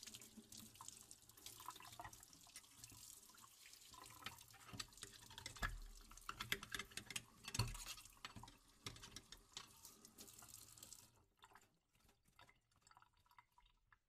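Water running from a tap into a sink while dishes clink against each other. The water shuts off about eleven seconds in, leaving a few scattered clinks and drips.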